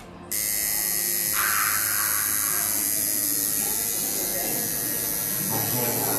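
Electric tattoo machine buzzing steadily as its needle works into skin, cutting in abruptly just after the start.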